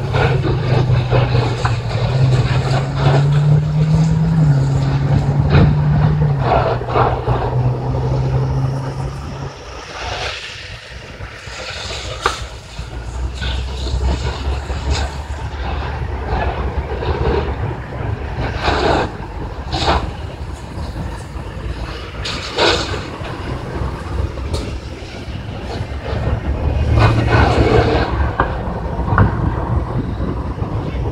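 Heavy truck's diesel engine running close by: a steady low hum that steps up in pitch and back, fades out about ten seconds in and returns near the end. Several short, sharp hissing noises come in between.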